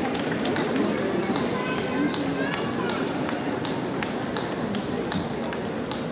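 Table tennis balls clicking irregularly off bats and tables in a sports hall, over a murmur of voices.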